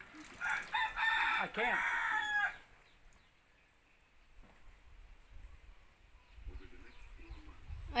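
A rooster crowing once, a call of about two seconds starting about half a second in.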